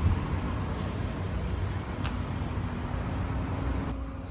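Steady low rumble of idling vehicle engines, with a faint steady hum joining about halfway through and a single sharp click near the middle.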